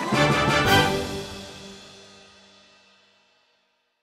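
Closing chord of an orchestral children's song, with a last accented hit about two thirds of a second in. It then rings out and fades to silence within about three seconds.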